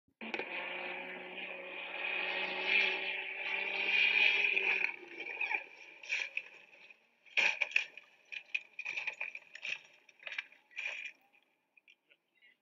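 A race car at speed, its engine running at a steady pitch and growing louder for about five seconds before it stops; then scattered scrapes and knocks, the sharpest a couple of seconds later, as the car slides off the road in a crash.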